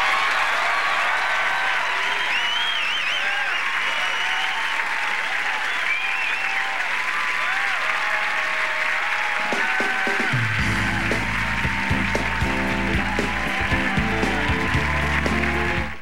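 Studio audience applauding and cheering with whoops and whistles at the end of the song. About ten seconds in, music starts up under the applause.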